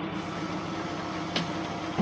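Heavy-equipment diesel engine running steadily at a constant pitch, with one sharp knock about one and a half seconds in.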